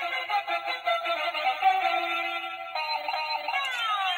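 Musical light-up spinning top playing its electronic tune, a thin melody that changes about three-quarters of the way in and ends in falling pitch sweeps.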